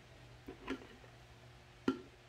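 Quiet room tone with a few short, faint clicks and knocks: two about half a second in and a sharper one near the end.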